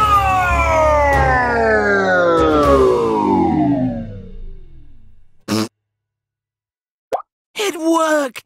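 A cartoon smartphone's voice sinking steadily in pitch and fading over about five seconds, like a slowing recording, as its battery dies and it powers down. Then comes a short blip, about two seconds of silence, and a voice near the end.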